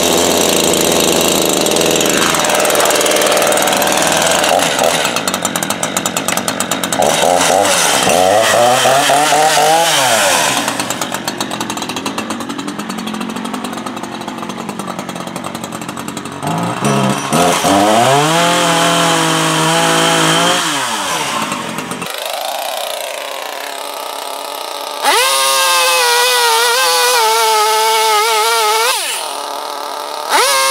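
Echo CS-3510 two-stroke gas chainsaw running at high revs while cutting into the trunk of a dead tree. Its engine pitch rises and sags several times as it is throttled up and bites into the wood, with a quieter spell a little past the middle.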